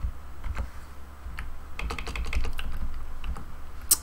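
Computer keyboard being typed on: scattered keystrokes, a quick run of key presses about two seconds in and a louder click just before the end, over a low steady hum.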